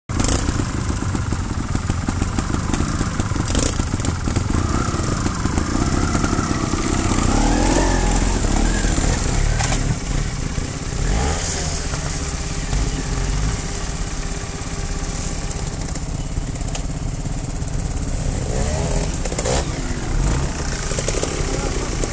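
Trials motorcycle engine running at low revs, the throttle opened and closed as the bike works over rocks, with a rise and fall in revs about eight seconds in.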